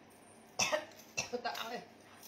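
A woman speaking in short phrases, with a sudden cough-like burst about half a second in.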